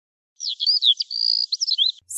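Birds chirping: a quick run of rising and falling chirps with a brief held whistle in the middle, starting about half a second in.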